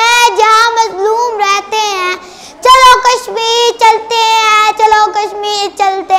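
A young boy's solo voice singing a verse in long held notes, pausing briefly about two seconds in before going on.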